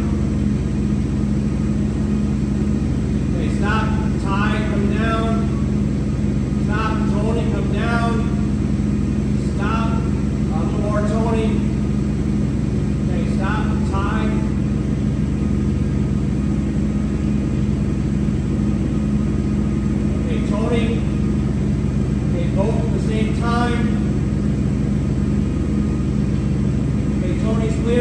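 Forklift engine idling with a steady low hum that does not change.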